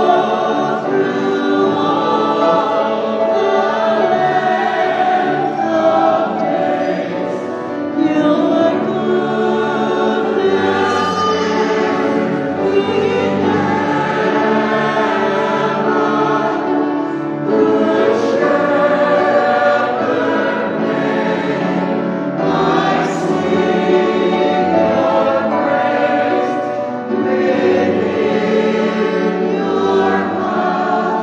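Choir singing a hymn, with sustained, overlapping voices and no break.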